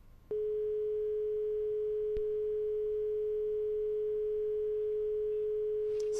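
Telephone dial tone on the studio's call-in line: a single steady tone that switches on suddenly just after the start, heard over the broadcast while no caller is connected. A faint click comes about two seconds in.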